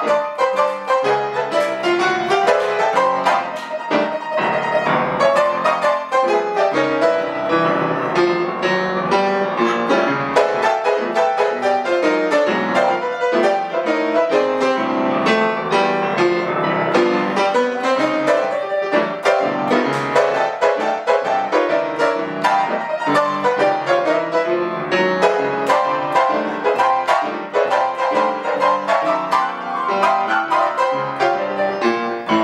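Grand piano played solo, loud and dense, with a constant stream of fast struck notes and chords. It is played in the hard-hitting style of an old-time pianist who had to be heard in barns and juke joints with no PA.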